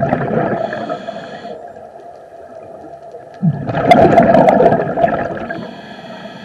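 A scuba diver breathing through a regulator underwater: two gurgling rushes of exhaled bubbles, one at the start and one from about three and a half seconds in, each joined by a thin whistling tone of air through the regulator.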